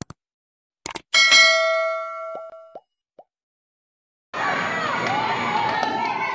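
Subscribe-animation sound effects: a few quick mouse clicks, then a bright bell ding that rings out for about a second and a half. After a short silence, the crowd chatter and shouting of a busy sports hall comes in about four seconds in.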